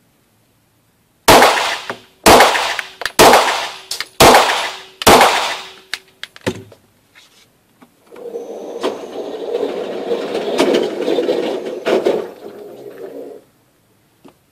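SIG Sauer SP2022 9 mm pistol fired five times, about a second apart, each shot echoing in an indoor range; the first is a heavy double-action pull from the decocked hammer. A few seconds later a steady mechanical running sound lasts about five seconds, the range's target carrier bringing the target back.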